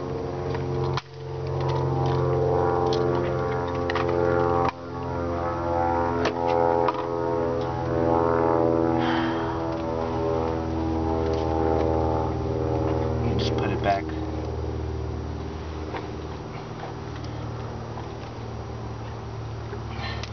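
Toyota Celica's 16-valve engine running at a steady idle, a low drone with many overtones, cutting out briefly twice in the first five seconds.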